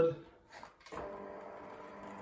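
MiScreen thermal screen maker starting to run about a second in: a faint, steady machine hum as it feeds the mesh past its thermal print head, which burns away the heat-sensitive coating.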